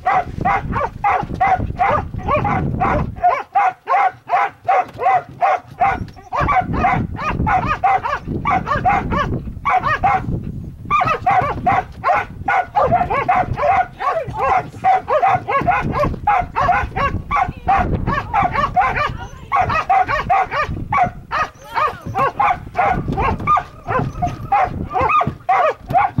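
A dog barking over and over, about three barks a second, with a brief break about ten seconds in.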